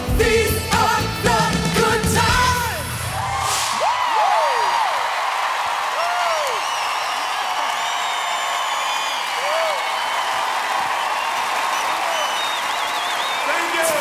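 A live funk band with singers plays its final bars, and the music ends about four seconds in. A large audience then claps and cheers, with scattered whoops, for the rest of the time.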